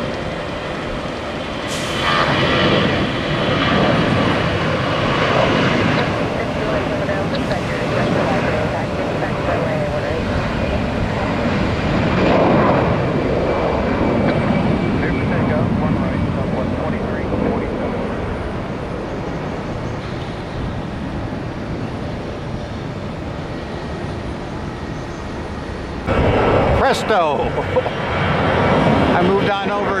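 Twin-engine Airbus jet airliner at takeoff power: the engine noise swells about two seconds in as it rolls down the runway and lifts off, then slowly fades as it climbs away. A louder, sharper stretch of sound comes near the end.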